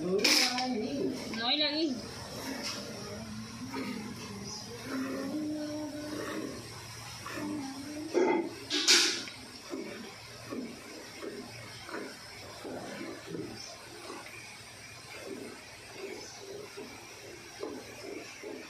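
Cow being milked by hand into a steel bucket partly full of milk: streams of milk hiss into the pail with each pull on the teats. The strokes settle into a steady rhythm in the second half, with louder hissing jets near the start and about nine seconds in.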